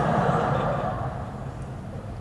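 Low, even background murmur of a lecture hall, slowly fading over the two seconds with no distinct event in it.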